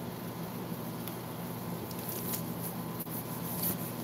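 Quiet room tone: a steady low hum, with a few faint light clicks and taps in the second half.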